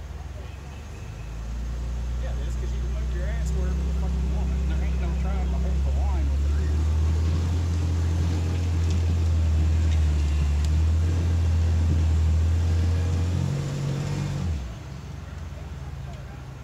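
Off-road SUV engine revving hard under load as the vehicle climbs a steep rock ledge. It builds about a second in, holds steady and loud, then drops back suddenly near the end.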